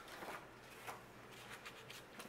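Faint rustling of paper banknotes being handled, with a few soft ticks as bills are picked up from a stack.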